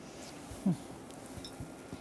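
Quiet room tone, broken by a short murmured "hı" about half a second in.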